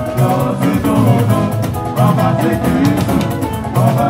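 Live band music: a drum kit keeping a regular beat under instruments and a singing voice.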